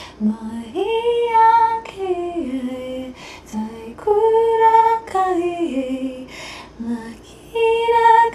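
A woman singing a light-language song solo in wordless syllables: phrases of held notes that step down in pitch, with short breaths between them.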